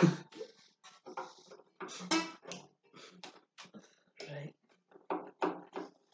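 A man and a woman laughing softly in short, broken bursts of giggling.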